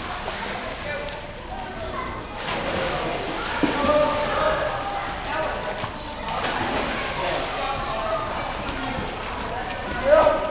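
Children's voices calling and chattering, echoing in an indoor pool hall, over the splashing of swimmers kicking and stroking through the water.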